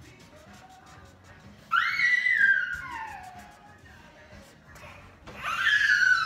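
A toddler shrieking twice, high-pitched cries that fall in pitch, the first about two seconds in and the second near the end, over faint background music.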